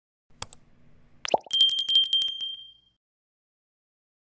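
Subscribe-button sound effect: a mouse click, a quick swoosh, then a small bell ringing rapidly for about a second before fading out.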